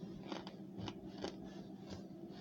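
Close-up chewing of chunks of powdery starch: several short, sharp crunches about half a second apart as the chalky pieces break between the teeth.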